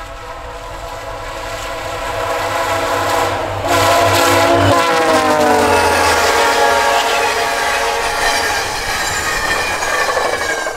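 Diesel passenger locomotive sounding a long multi-tone air horn as it approaches and passes, under its engine and wheel noise. The horn grows louder over the first few seconds, then its chord falls in pitch about five seconds in as the locomotive goes by.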